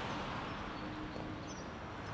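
Steady hiss of traffic on a wet city street, with car tyres running on the wet road.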